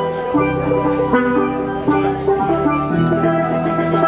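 Steel band playing a tune: steel pans carry the melody and chords over an electric bass guitar and a drum kit, with a cymbal stroke about every two seconds.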